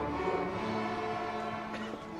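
A school string orchestra of violins and cellos playing held, sustained notes. The phrase eases off slightly near the end.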